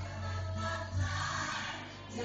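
Small gospel choir singing live in harmony over a steady low bass note.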